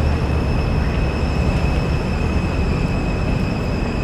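Road traffic: vehicles driving slowly across a rough, patched road surface, a steady low rumble with a thin steady high-pitched whine above it.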